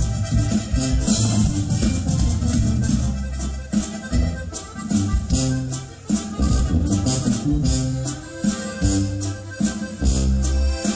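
Live Mexican regional band music with accordion, played loudly with a steady beat and strong bass; an instrumental stretch with no singing.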